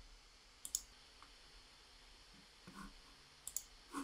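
Faint computer mouse button clicks: a quick pair about two-thirds of a second in and another pair near the end.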